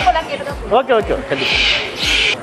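Caged birds, budgerigars among them, calling and chattering, with a bright burst of chatter in the second half, over background music with a steady low beat.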